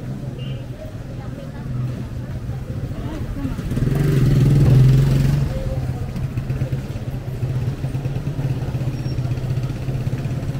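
A motorcycle tricycle's engine running close by, swelling to its loudest about four to five seconds in as it passes, with a steady engine drone under street noise and voices.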